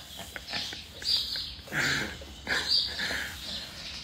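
Stifled, breathy laughter from a person, coming in several short airy bursts with no words.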